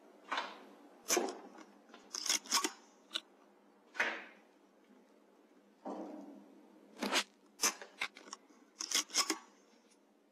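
Weihrauch HW100 .22 PCP air rifle in use: a run of about a dozen sharp clicks and snaps, bunched in clusters, a few with a short decaying tail.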